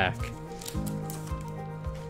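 Background music with steady held notes, under faint rustling and light clicks of a foil booster pack and trading cards being handled as the cards are drawn out.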